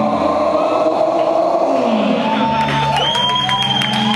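A live rock band's last chord ringing out after the drums stop, with a low note sliding downward about halfway through. The crowd begins cheering and whooping in the second half, and a high steady tone sets in near the end.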